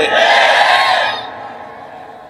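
A large audience shouting a response together, a loud mass of voices lasting about a second before fading away.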